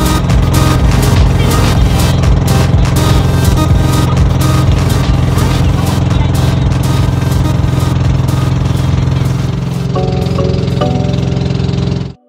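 Outrigger boat's engine running steadily at cruising speed, a loud even drone, mixed with background music whose melody comes through more clearly near the end.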